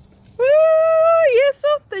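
A person's voice: one long, high-pitched drawn-out 'uuuh' exclamation that dips at the end, followed by a couple of short sounds and the start of spoken words.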